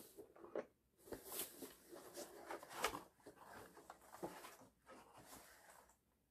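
Faint handling of a cardboard board-game box: irregular rustles, scrapes and light taps as it is turned over and set down, with a sharper knock a little before three seconds in.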